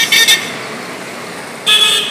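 Vehicle horn honking: two quick short toots right at the start and another short blast about a second and a half later, over steady street noise.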